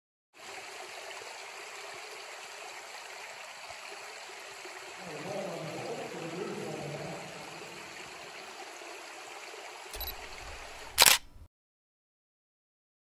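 Steady trickling water in a flooded mine chamber. It grows louder and lower for a couple of seconds in the middle, and a single sharp knock, the loudest sound, comes near the end just before the sound cuts off.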